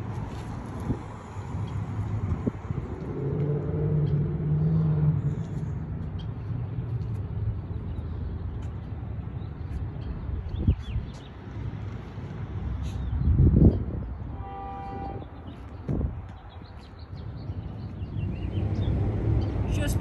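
Outdoor street ambience: a steady low rumble, swelling louder about thirteen seconds in, followed by a brief horn-like tone and a short knock.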